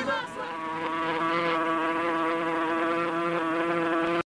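A steady buzzing tone held at one pitch, with many even overtones and no wavering, comes in just after the last chanted word and cuts off suddenly at the end.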